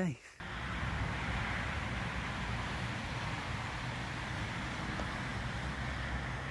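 Steady outdoor ambient noise: an even rush with a low rumble underneath.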